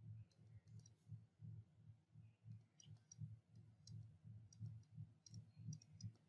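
Near silence with faint, irregular clicks in small clusters: a stylus tapping on a writing tablet as handwriting is added.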